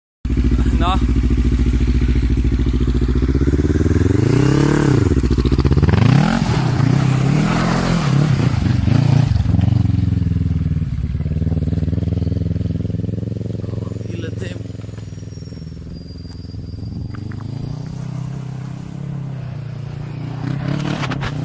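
Kawasaki ER6 650cc parallel-twin engine swapped into a Lucky Star quad. It idles steadily at first, then is revved hard up and down several times over a few seconds. After that it drops back and fades as the quad moves away.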